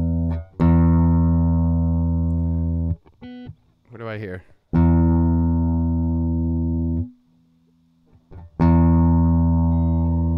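Electric guitar's open low E string, played clean through an amp simulation, plucked three times and each time left to ring and slowly decay, with its overtones, among them the B, sounding above the fundamental. A brief, fainter scratchy sound comes between the first two notes.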